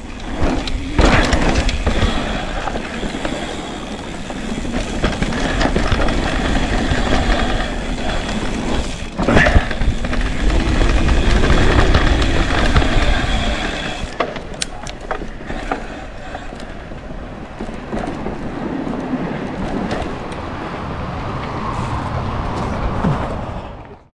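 Mountain bike rolling fast down a dirt trail: steady tyre and wind noise with the frame and drivetrain rattling, and a sharp knock about nine seconds in. It quietens from about the middle as the bike slows, and cuts off suddenly at the end.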